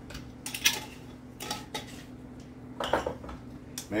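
Light clinks and knocks of a glass salt jar and a pepper shaker being handled and set down in a kitchen, a few scattered through the seconds. A steady low hum runs underneath.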